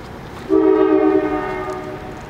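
Multi-chime locomotive air horn sounding one blast for the grade crossing as the train approaches. The chord of several tones starts suddenly about half a second in and fades out near the end, over the steady rumble of the approaching train.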